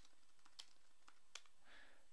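Faint typing on a computer keyboard: a few scattered keystroke clicks over a low hiss.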